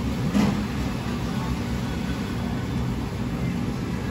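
Steady low machinery hum of a commercial kitchen, with one short, louder sound about half a second in.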